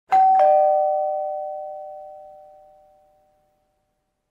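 Two-note ding-dong chime: a higher note struck, then a lower one a moment later, both ringing out and fading away over about three seconds.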